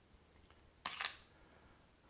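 Camera shutter firing on its self-timer to take one frame of a focus-stacking series: two quick clicks close together, a little under a second in.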